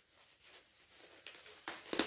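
Faint rustling and a few soft clicks of packaging being handled as yarn is taken out of a parcel, with the loudest rustle near the end.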